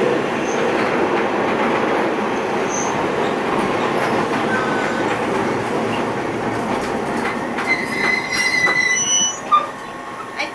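Running noise of a KiHa 28 and KiHa 52 diesel railcar pair heard at the gangway between the two cars: wheels on rail, and the steel checker-plate gangway plates rattling and scraping against each other. Late on, a high steady squeal joins. The noise then drops off with a single knock shortly before the end.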